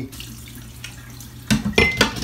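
Potato rinse water pouring from a bowl through a strainer into a stainless-steel sink and draining. About one and a half seconds in come loud knocks and rattles as the strainer of grated potatoes is handled and shaken against the sink.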